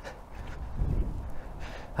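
Wind rumbling on the microphone, a low unsteady buffeting that swells briefly about a second in.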